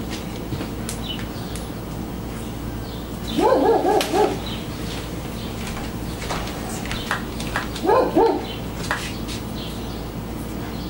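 An excited dog barking in two quick volleys of several short barks, one about three seconds in and a shorter one near eight seconds. Small clicks are heard in between.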